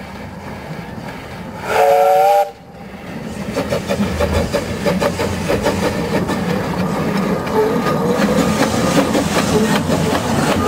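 Narrow-gauge steam locomotive giving a short blast on its steam whistle, several tones at once, about two seconds in. After that the engine's exhaust beats and the clatter of wheels on rail grow steadily louder as it passes close with its carriages.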